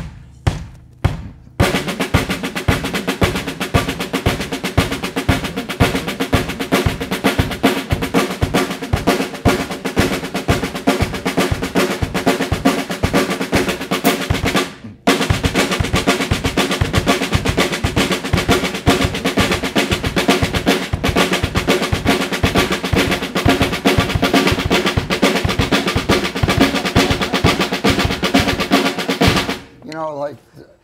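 A drum played with sticks in a fast, continuous run of even strokes: a sticking exercise that starts with a double stroke and ends with a single, displaced against the beat. A few strokes open it, then the run goes on with one short break about halfway through.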